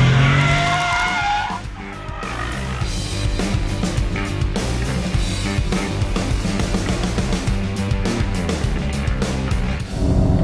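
Mercedes-AMG C63's tyres squealing as the car slides with its tail out, a high squeal that drops in pitch and fades about a second and a half in. After that, background music with a steady beat is the main sound, with car noise under it.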